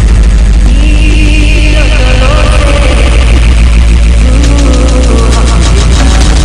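Indistinct voices over a loud, steady low hum, with a run of quick, even high ticks in the second half.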